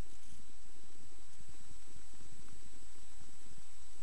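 Cessna 172S's four-cylinder Lycoming engine and propeller running steadily in flight at reduced power, heard from inside the cabin as an even drone with air hiss.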